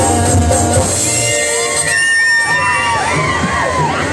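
Live stage-orchestra music with bass stops about a second in. The audience's voices then shout and cheer, their pitch rising and falling.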